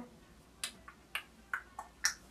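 A run of sharp finger snaps, about three a second, starting about half a second in.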